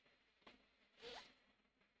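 Plastic markers being picked up and slid against each other by hand: a faint click, then a short swish with a brief rising squeak about a second in.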